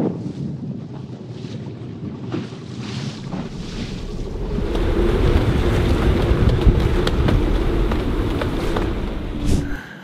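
Strong wind buffeting the microphone over a choppy sea, with water washing around the boat. The wind noise grows louder and heavier about halfway through.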